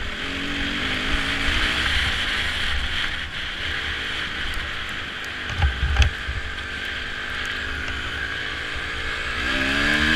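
Honda dirt bike engine running as it rides a gravel track, heavy wind noise on the microphone over it, and the engine note rising as it accelerates near the end. Two sharp knocks about halfway through, like the bike hitting bumps.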